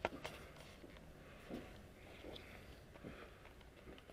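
Faint footsteps, three soft steps in an even walking rhythm, with a couple of sharp handling clicks right at the start.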